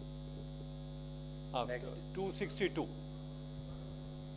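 Steady electrical mains hum on the audio feed, a low buzz with its overtones. A brief stretch of indistinct, untranscribed speech comes about a second and a half to three seconds in.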